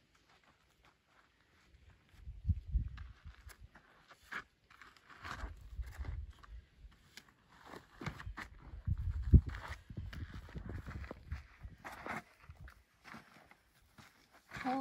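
Footsteps and scuffs of someone scrambling over sandy rock ridges, in irregular bursts starting about two seconds in, with low rumbling on the microphone.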